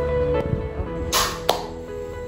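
Background music with steady held notes, broken a little over a second in by a short whoosh and a sharp click: a video-edit transition sound effect.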